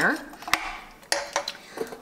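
A metal spoon stirring diced potatoes and broth in a slow cooker's crock, clinking sharply against the crock a few times.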